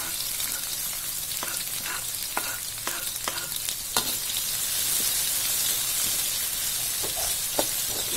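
Sliced red and green chillies, shallots and garlic sizzling steadily in hot oil in a metal wok. A metal spatula makes scattered clicks and short ringing taps against the pan as it stirs.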